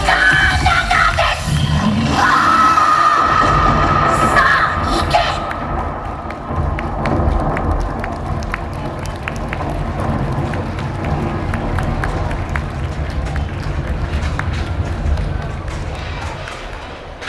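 Loud show dance music plays for about five seconds and then stops. A crowd cheers and shouts over a steady low rumble.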